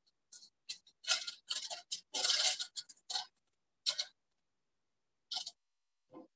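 Paper rustling and crackling in short bursts as the backing paper is peeled off adhesive paper and smoothed by hand, with a longer, louder stretch about two seconds in. It comes through video-call audio that cuts to silence between the sounds.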